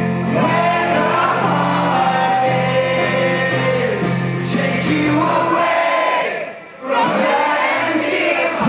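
Live rock band with amplified acoustic guitar playing and vocals being sung, with the crowd singing along. The music drops out briefly about six and a half seconds in, then comes back.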